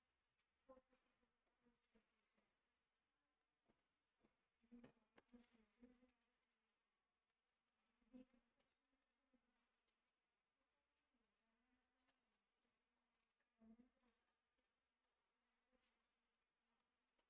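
Near silence: room tone with a few very faint, short clicks.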